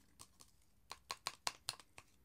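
Sample sachet of powder crinkling as it is emptied over a plastic shaker cup: a faint, quick run of sharp crackles, most of them in the second half.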